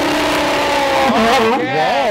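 A sea lion roaring with its mouth wide open. It is one long, harsh call that wavers in pitch over its second half.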